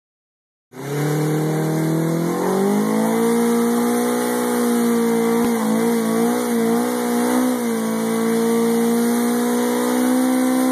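Suzuki Hayabusa's inline-four engine revving through a burnout, with the rear tyre spinning and smoking on concrete. The engine comes in just under a second in, climbs in pitch about two seconds in, then holds at high revs, wavering briefly in the middle.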